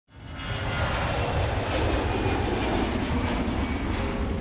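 Jet aircraft engine noise, a steady rumble with a hiss on top, swelling in within the first half second.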